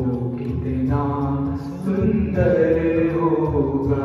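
Male voice singing a Hindi devotional bhajan in a chant-like style, accompanied by an electronic keyboard. It falls into two sung phrases with a short break about halfway through.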